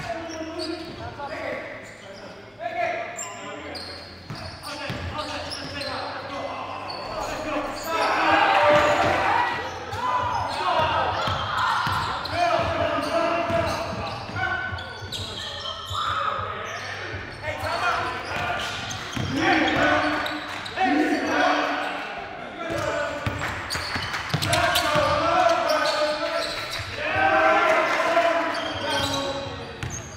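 A basketball bouncing on a hardwood gym floor during play, with players' indistinct voices calling out, all carried on the reverberation of a large gymnasium.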